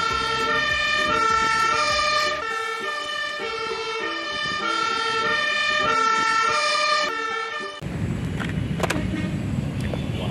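Fire-engine siren sounding two alternating tones over and over. It cuts off suddenly about eight seconds in, and a steady rushing noise follows.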